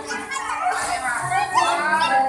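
Children's high voices calling out and chattering as they play, pitch sliding up and down and getting louder toward the end.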